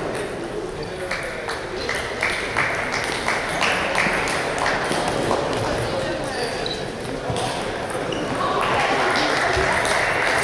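Celluloid table tennis ball in a rally, struck by rackets and bouncing on the table: an irregular run of sharp clicks, several a second.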